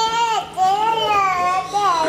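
Baby crying out in two drawn-out wails, a short one followed by a longer one that rises and falls in pitch.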